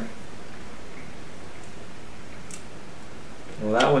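Steady background hiss of room tone with one faint short click about two and a half seconds in; a man's voice begins near the end.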